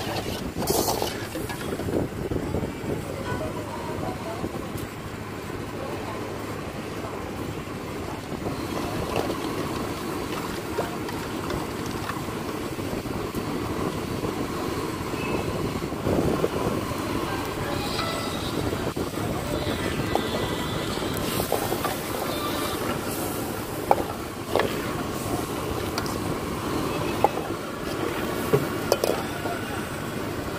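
Chicken soup boiling in a large iron wok over a gas burner, a steady bubbling and hissing noise, with a few sharp metal clanks of a steel ladle striking the wok as it is stirred.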